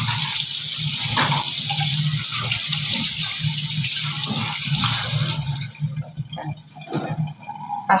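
Tap water running and splashing over a silver tray being rinsed in a stainless steel sink. The water stops about five seconds in, followed by a few light knocks of the metal being handled.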